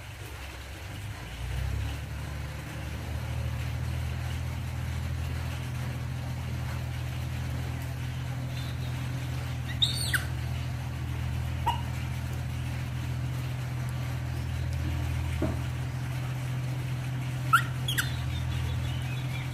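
A steady low mechanical hum, with a few short high chirps, the first about ten seconds in and the last near the end.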